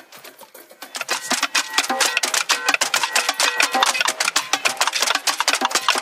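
Percussion music that starts about a second in: fast, dense clicking strikes like sticks on wood, over a stepping melodic line.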